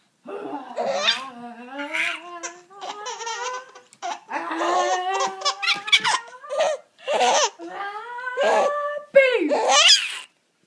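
Baby laughing in repeated bursts, with drawn-out vocal sounds that glide up and down in pitch between the laughs; the loudest burst comes near the end.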